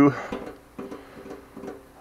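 A man's voice trailing off at the end of a word, then a quieter stretch with faint low humming.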